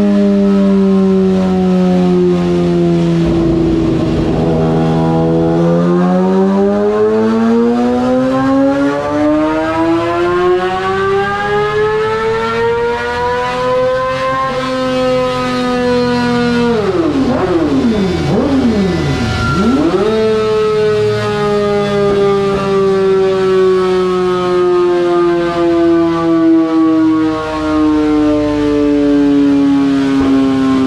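2020 Yamaha R6's inline-four on a motorcycle dyno, breathing through a shortened stock muffler with its packing removed and a cat-delete pipe, making its baseline full-throttle pull. The revs climb steadily for about eight seconds to a high-pitched peak, drop and pick up again in a few quick blips, then fall slowly as the engine winds down.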